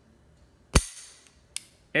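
Beretta 92 pistol dry-fired on an empty chamber: one sharp click as the hammer falls, then a fainter click less than a second later.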